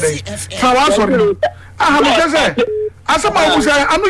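Speech: a person talking in short phrases with brief pauses.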